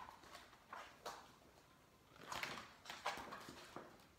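A hardback picture book being handled and opened, its cover and pages turning, giving a few short, quiet rustles.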